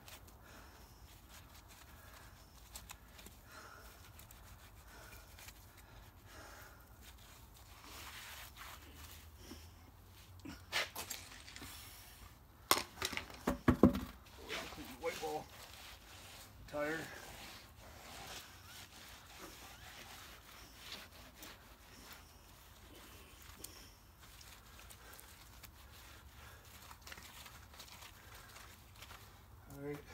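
Hand scrubbing of a whitewall tire and steel wheel rim with degreaser, a soft rubbing. A cluster of sharp knocks comes a little before halfway, followed by a few short grunts or mutters.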